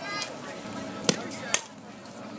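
Sharp crack of a softball bat striking a pitched ball, with a second sharp knock about half a second later.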